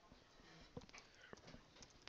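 Near silence with a few faint, separate clicks of computer keys being typed.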